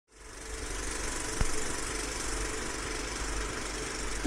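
Vintage film projector running: a steady mechanical whir with a fast flutter, fading in over the first half second, with a single sharp click about a second and a half in.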